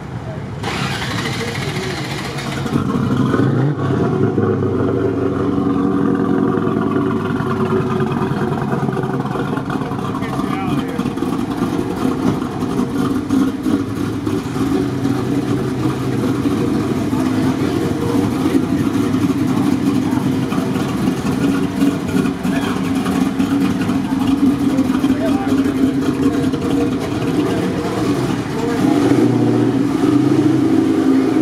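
A classic car's engine starting up about half a second in, then running steadily with a low, even sound, a little louder near the end.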